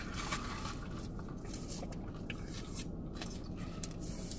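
Quiet car interior: a low, steady hum with a few faint clicks and rustles as drink cups and straws are handled.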